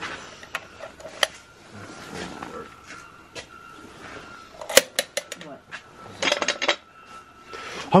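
Scattered sharp metallic clinks and clanks, the loudest a little under five seconds in and a quick run of clicks a little after six seconds, over a faint steady high tone.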